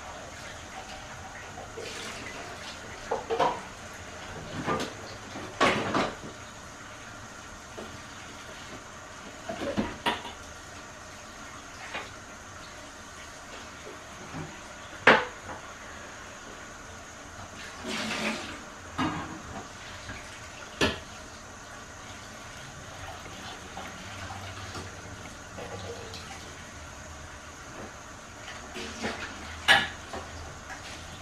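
Dishes being washed by hand in a kitchen sink: scattered clinks and knocks of dishes and cutlery against each other and the sink, a few seconds apart, over a steady hiss of water.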